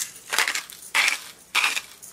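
Seatore salt grinder's ceramic grinding mechanism crushing coarse salt as its top is twisted, set toward the coarse grind: short crunching grinds in quick succession, roughly three to four turns a little over half a second apart.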